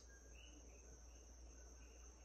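Near silence with faint, regular night chirping, one short chirp every half second or so, over a steady thin high whine.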